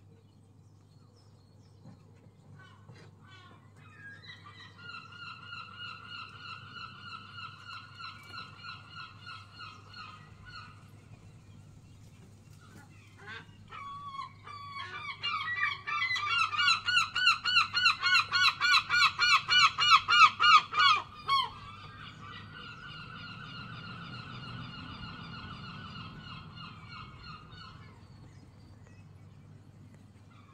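Gulls calling in runs of rapid, repeated yelping notes: a moderate run from about four seconds in, then a much louder series in the middle that cuts off suddenly, and a quieter run near the end.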